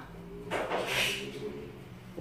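A soft scraping swish, about a second long, as silicone spatulas push and fold a cooked omelette over in a nonstick frying pan, over a faint steady hum.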